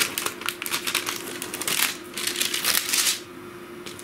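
Parchment paper being peeled off sticky tape, with the paper and the taped plastic sheet crinkling and crackling in the hands. The crackling stops about three seconds in.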